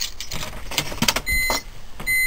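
A scatter of sharp clicks in a BMW E46's cabin as the stereo head unit powers up. About two-thirds of the way in, a steady high-pitched electronic whine starts.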